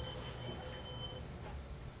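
Low, steady hum from an AC-powered coil with an iron core, a jumping-ring apparatus, switched on with a metal ring levitating on it.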